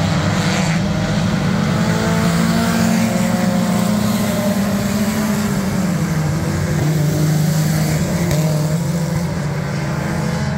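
A pack of front-wheel-drive four-cylinder dirt-track race cars running together, many engines at once, steady and loud.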